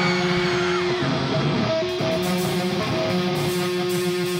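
Amplified electric guitar noodling before the song starts: held notes and chords that change about once a second, with no drums.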